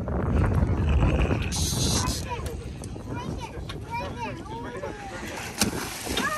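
Wind buffeting the microphone in a low rumble, strongest over the first two seconds, with a short hiss about a second and a half in and faint voices later on.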